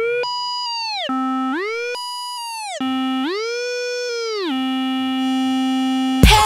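A single electronic synthesizer tone sliding up an octave and back down three times, holding each pitch for about a second, with no beat behind it.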